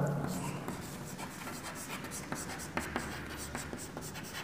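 Chalk writing on a chalkboard: faint, irregular taps and scrapes as the chalk strokes out letters.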